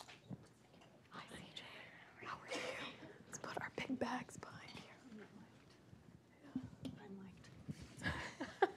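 Faint, murmured talk and whispering away from the microphone, with a few light clicks and rustles of handling.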